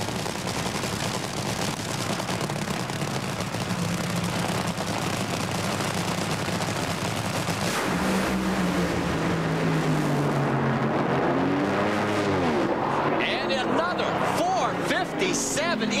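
Two Top Fuel dragsters' supercharged nitromethane V8s crackling loudly at the starting line, then both launching at full throttle about eight seconds in. After the launch the engine note falls steadily over about four seconds as the cars pull away down the track.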